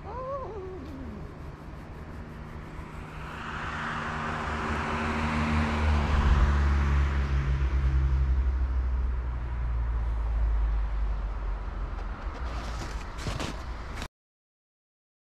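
A road vehicle passing on the road below: its low engine rumble and tyre hiss swell to a peak about six seconds in and then fade away. At the very start there is a short cry-like sound that falls in pitch, and near the end a few sharp clicks.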